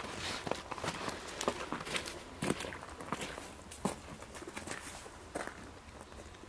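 Footsteps crunching in snow: irregular steps and scuffs at uneven intervals, growing sparser near the end.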